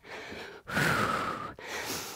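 A woman breathing hard through the mouth after a run of jumping moves. One long, audible breath about half a second in, between fainter breaths.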